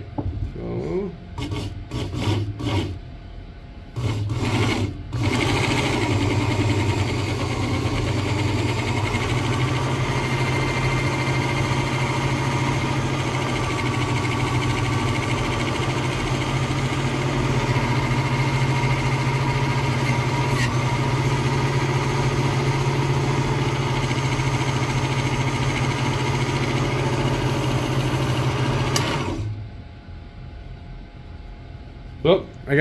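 Work Sharp Ken Onion Edition sharpener's electric motor driving a leather stropping belt: a few short bursts at first, then running steadily with a low hum until it stops near the end.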